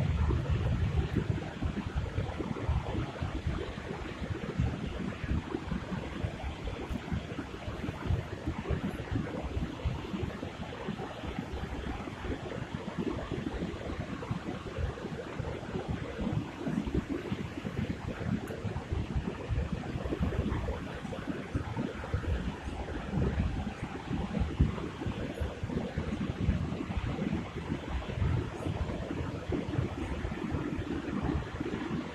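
Gusty wind buffeting the microphone over the steady rush of a shallow river running over riffles.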